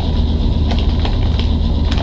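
A steady low hum with a few short, faint clicks.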